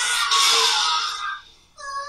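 A man's wordless scream of surprise, hoarse and high, lasting about a second and a half before cutting off, over the cartoon's soundtrack music.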